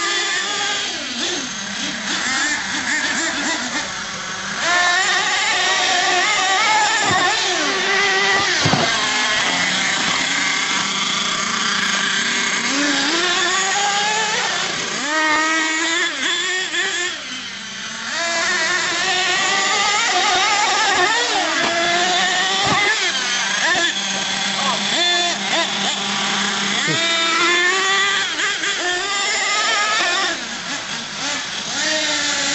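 Nitro RC monster trucks' small two-stroke glow engines revving hard and easing off over and over as they drive and hit the jump, pitch rising and falling, with a short quieter spell a little past the middle.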